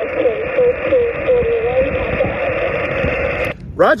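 HF single-sideband receive audio from a Xiegu G90 transceiver on 40 meters: a distant station's faint voice buried in narrow-band static and hiss. It cuts off suddenly about three and a half seconds in, when the microphone is keyed, and a man close by starts to speak.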